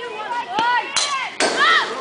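Sharp crack of a softball bat meeting the pitch on a swing, about one and a half seconds in, among spectators' shouts.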